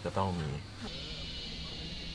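A man's voice briefly, then a steady high-pitched insect chorus, like cicadas, from about a second in, with a low steady hum beneath it.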